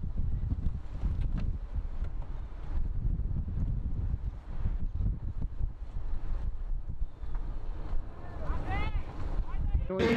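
Wind buffeting the microphone, a heavy low rumble, with faint voices behind it and a few short high calls near the end.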